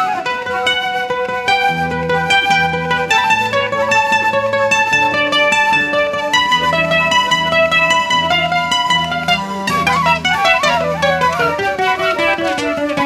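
Live guitar playing an instrumental melody of quickly picked notes. Low held notes sound underneath from about two seconds in, and a fast falling run of notes comes near the end.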